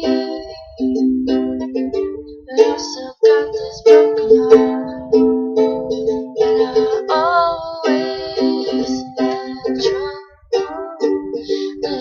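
Ukulele strummed in chords, accompanying a song, with a voice singing over it in places.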